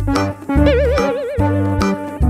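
Playful background music with a bouncy low beat and a melody line that warbles with a fast, wavering vibrato for about a second near the middle.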